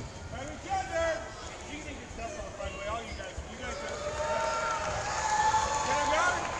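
Indistinct voices of people talking in a sports hall. In the second half, several voices call out in long, drawn-out cries that grow louder toward the end.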